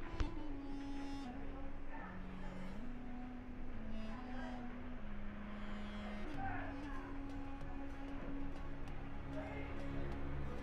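Ginger-garlic paste sizzling and bubbling in hot oil in a steel pot. Slow background music of long held notes plays over it.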